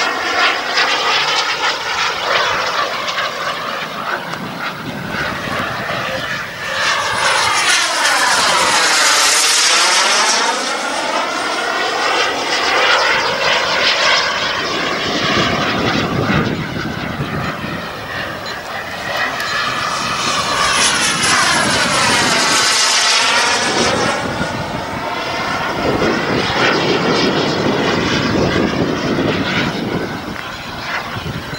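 Kingtech K140 model jet turbine of an RC F1 Fortune jet running at flying speed, a continuous hissing jet sound. It grows loudest twice, about nine and about twenty-one seconds in, as the jet makes close passes, each with a swooshing sweep in tone as it goes by.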